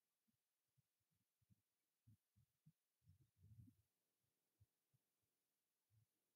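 Near silence, with only a few very faint low thuds.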